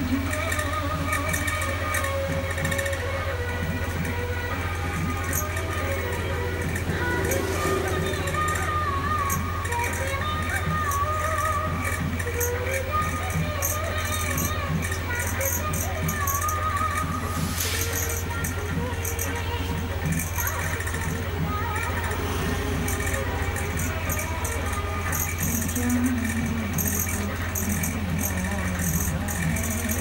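Fingers rubbing and scratching through hair on the scalp in a head massage: a run of short, quick rustling strokes, over background voices, music and a steady low hum.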